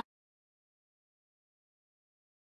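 Silence: the audio cuts out abruptly at the start and stays dead silent.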